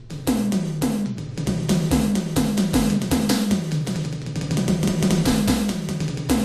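Korg Wavedrum Mini electronic percussion pad slapped by hand, playing a busy run of drum hits. Many of the hits are tom-like, with a pitch that drops after each strike, about two a second.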